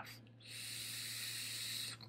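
Steady hiss of air drawn through an M-Atty dual-coil rebuildable dripping atomizer (RDA), its airflow wide open, during one draw of about one and a half seconds that starts about half a second in.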